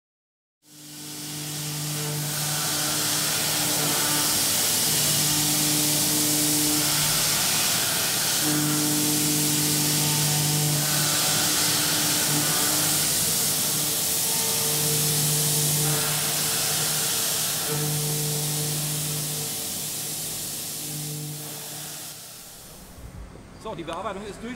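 HELLER HF 3500 five-axis machining centre milling with coolant: a loud, steady hiss with a low humming tone that cuts in and out every second or two as the spindle works, fading away near the end.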